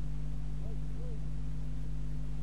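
A steady low hum, with two faint, brief pitched sounds that rise and fall in the first half.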